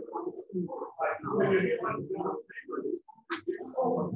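Indistinct, muffled voices talking in a room, with a short pause about two and a half seconds in.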